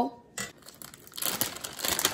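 A plastic bag of shredded cheddar cheese crinkling as it is picked up and handled, starting about a second in, after a brief light knock.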